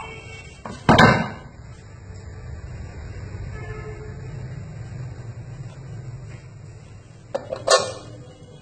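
Kitchenware handled on a hard worktop: one loud knock about a second in, then near the end a quick clatter of two or three knocks as a lidded aluminium pot is set down.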